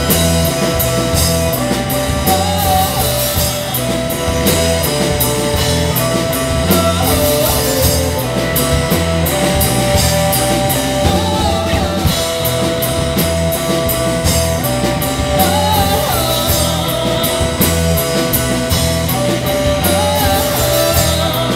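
Live rock band playing: two electric guitars, electric bass and drum kit, with held guitar notes over a steady beat.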